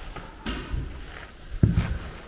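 Footsteps and knocks as someone walks across a floor, the loudest a low thud shortly before the end.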